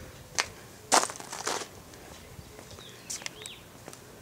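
Footsteps scuffing on a concrete patio as the person filming walks forward: a few separate steps, the loudest about a second in, a short cluster after it, and two more near the end.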